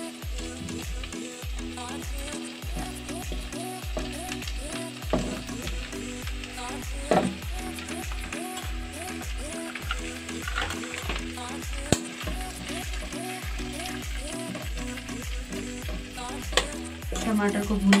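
Tomato chunks frying and sizzling in a pot of hot oil and butter with sautéing onion and garlic, stirred with a metal spoon, with a few sharp clicks of the spoon against the pot. Background music with a steady beat plays underneath.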